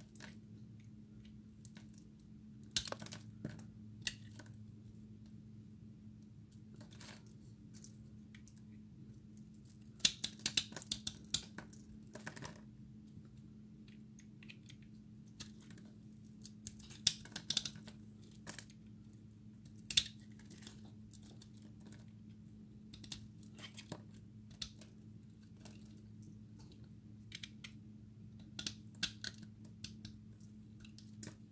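A snap-off utility knife blade cuts and shaves into a bar of translucent red soap, making irregular crisp clicks and crackles in short clusters, the busiest about a third of the way in. A steady low hum runs underneath.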